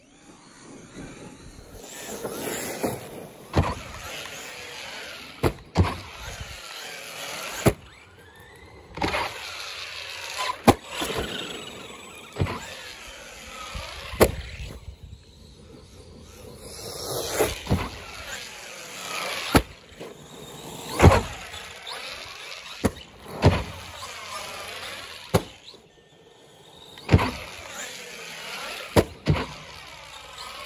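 Brushless motor of an Arrma Granite 3S BLX RC monster truck whining, rising and falling in pitch as the truck speeds up and slows, over and over. Many sharp thumps and knocks are scattered throughout.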